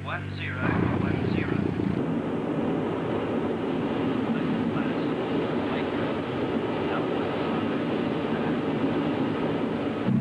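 Steady rushing drone of aircraft in flight, starting about half a second in and holding evenly, with a few brief rising and falling whistles in the first second and a half.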